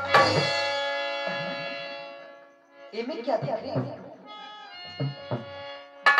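Live stage music of harmonium and hand drum: a chord struck with a drum beat at the start, its held notes fading over about two and a half seconds, then softer harmonium notes with scattered drum strokes.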